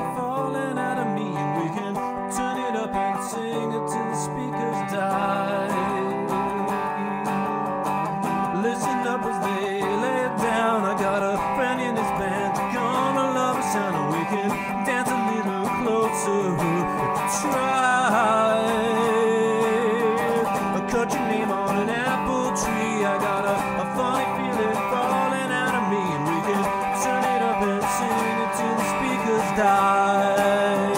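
Electric guitar played through a miked amplifier: an instrumental break in a rock song, with notes that bend in pitch.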